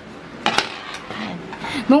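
Light metal clinks and knocks from a metal table frame and its screws as it is taken apart with a screwdriver; a short cluster of sharp clicks comes about half a second in.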